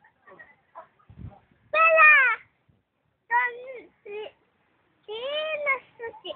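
A cat meowing four times: long, arching meows about two seconds in and near the end, with two shorter ones between.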